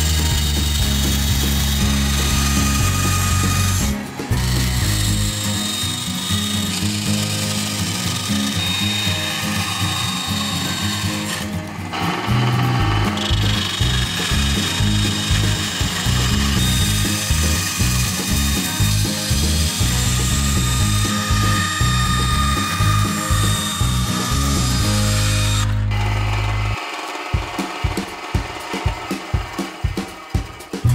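Scheppach benchtop band saw running and cutting a plastic sheet, with background music that has a stepped bass line. The saw sound breaks off at cuts in the sequence, and near the end the music carries on with an even beat.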